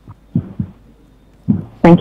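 A few short, soft, low thumps on a conference microphone during a pause, then a woman starts to say "Thank you" near the end.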